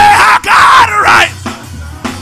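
Church worship music: a singer holds a high note and then lets out a loud cry that bends up and down, over a steady bass line. The voice drops away about a second and a half in, leaving the accompaniment.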